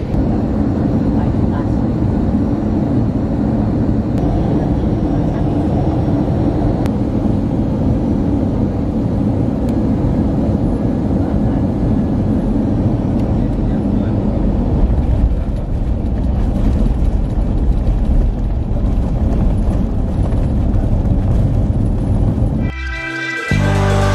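Loud, steady cabin rumble of an Airbus A320 rolling along the ground, with engine and runway noise heard from inside the cabin. Music cuts in abruptly near the end.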